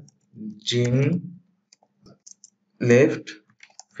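Computer keyboard typing: faint, scattered key clicks between two short spoken phrases, which are the loudest sound.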